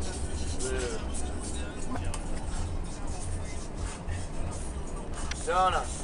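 Low, steady rumble of a bus heard from inside its cabin, with a short voice about a second in and another near the end.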